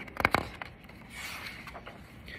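Paper page of a large picture book being turned by hand: a few quick flaps and clicks of the page, then a brief soft rustle about a second in as it settles.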